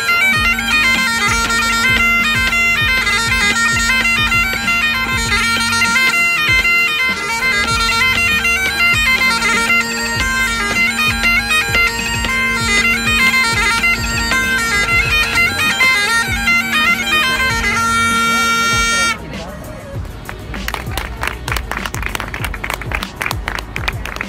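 Great Highland bagpipes played live: a chanter melody over a steady drone, ending about nineteen seconds in on a held note. Then comes quieter street and crowd noise with voices.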